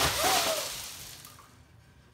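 Glass shattering, with shards scattering and tinkling across a wooden floor. The crash fades out over about a second and a half.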